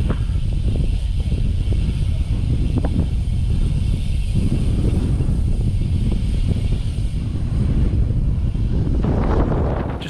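Wind buffeting the camera's microphone as a road bike descends at speed, a loud, steady, deep rumble that runs without a break.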